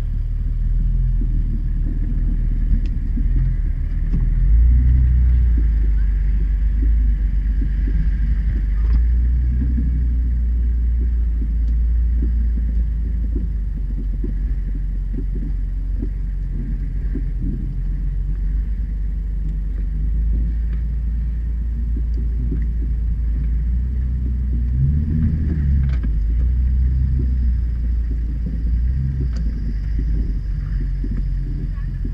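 Off-road 4x4's engine running at low speed as the vehicle crawls over rough ground, heard as a steady low rumble close to the microphone, swelling a little about four seconds in, with a few faint knocks and rattles.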